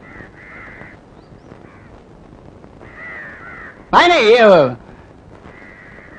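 A man's loud, drawn-out shouted call about four seconds in, its pitch wavering and then dropping at the end, over a faint low background.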